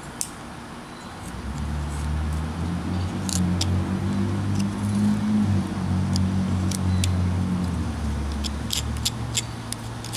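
A motor vehicle's engine hum swells in about a second and a half in and eases off near the end. Over it come short, sharp clicks of a carving knife slicing into basswood, a cluster in the middle and another near the end.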